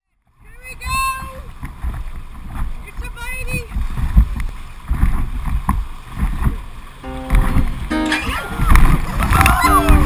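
Paddles splashing and river water churning around an inflatable raft, under a rumble of wind on the microphone, with people on board calling out and laughing. Music with steady held notes comes in about seven seconds in.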